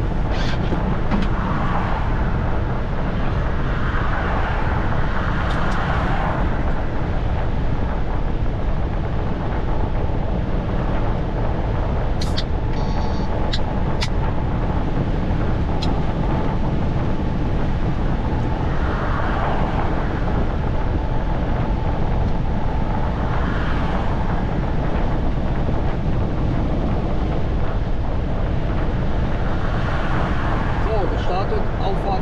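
Steady engine and road noise heard inside a lorry's cab while cruising at motorway speed, with a few brief faint clicks around the middle.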